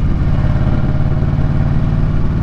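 2015 Harley-Davidson Street Glide Special's V-twin engine running steadily while the bike is ridden down the road, a low, even exhaust pulse with no change in revs.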